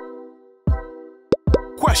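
Edited-in transition sound effects: a held synth chord fading out, then a few short pops that drop in pitch. Background music and a voice come in near the end.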